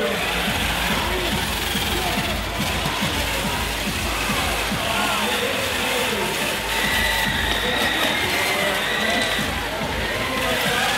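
Busy arena din at a robot match: many indistinct voices mixed with music, at a steady, fairly loud level.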